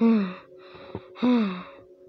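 A voice gasping twice, about a second apart, each a short breathy cry that falls in pitch.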